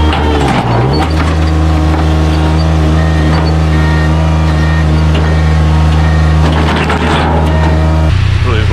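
Compact loader's engine running steadily with a loud, even low drone, dipping briefly in pitch near the start.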